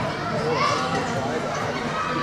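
Several young voices calling and shouting over each other as play goes on, the loudest call coming a little after half a second in.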